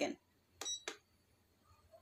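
Control button on an Olimpia Splendid Astomi Sound aroma diffuser pressed to change the light colour: a short high electronic beep with a click, then a second click about a third of a second later.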